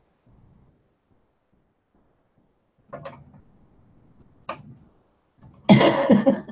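Quiet room for the first few seconds, then two short breathy sounds and, near the end, a loud burst of laughter.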